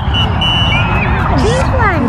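People talking over a steady low background rumble, with a thin high steady tone in the first second.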